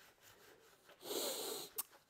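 A man's intake of breath, lasting under a second, about halfway through, followed by a short click, after a second of near quiet.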